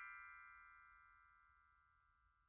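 The fading tail of a single ringing, chime-like musical note, dying away within about the first second and leaving near silence.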